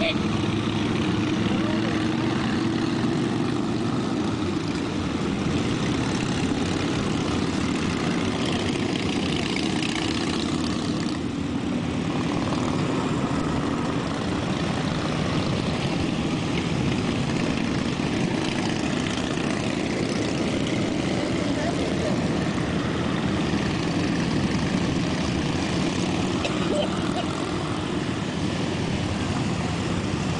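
Motorcycle engines running steadily: a continuous low engine drone that holds an even level throughout.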